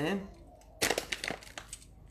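Dry rolled oats crackling and rustling under fingertips as they are pressed into a metal muffin tin cup, in a short cluster of crackles about a second in.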